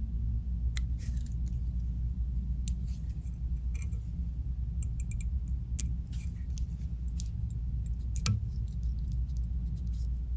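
Small fly-tying scissors snipping off the excess goose biot, with scattered light clicks from handling the scissors and tools over a steady low hum. The strongest click comes a little past eight seconds in.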